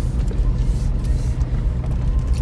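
Steady low engine and road rumble of a car heard from inside the cabin as it drives along.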